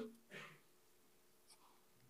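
Near silence: room tone, with one faint, short soft sound about a third of a second in.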